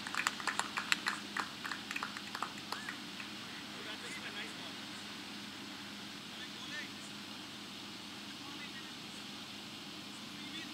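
Scattered hand clapping and a few short shouts, dying away about three seconds in; after that a steady low hum with faint distant voices.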